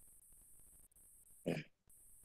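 Near silence, broken about one and a half seconds in by one short vocal sound from a person, such as a throat clear.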